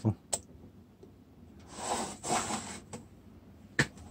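Handling noise from a small plastic desk fan standing on a metal tin base: a light click early on, a brief rubbing, scraping noise about two seconds in, then one sharp click near the end.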